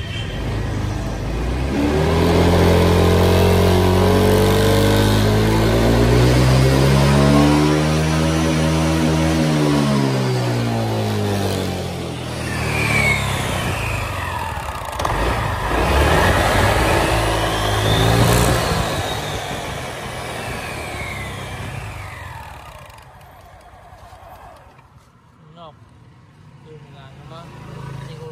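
Honda Vario 150 scooter's single-cylinder engine, its CVT clutch just rebuilt, revving up and easing back off over several seconds. With the CVT cover off and the pulleys spinning, it revs again with high whines that rise and fall, then dies down near the end.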